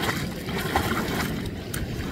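Water splashing and sloshing as a small child swims and thrashes in the water, with irregular splashes.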